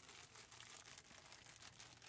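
Faint, irregular crackling of a thin clear plastic bag handled in gloved hands as pieces of chocolate bark are slipped into it.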